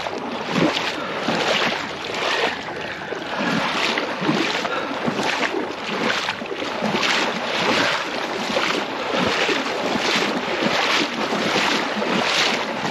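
Motor scooter pushing through floodwater over a road: the water splashes and sloshes around the front wheel in rhythmic surges, a little more than one a second.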